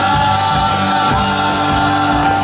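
Live rock band playing: electric guitars and drums under several voices singing together, with long held notes and a steady drum beat.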